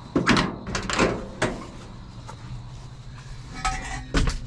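Cab door of a 1952 Chevrolet one-ton truck being opened by its push-button handle: a few sharp metal clicks and clunks from the latch and door in the first second and a half, and more door handling near the end.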